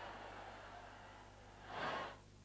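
Faint steady hum of an open broadcast audio line with no one speaking, and a short rush of noise lasting about half a second near the end.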